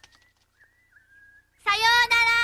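A young woman's high voice calling out a long, drawn-out farewell, "Sayo…", held on one pitch, starting near the end after a quiet stretch with only a faint thin tone.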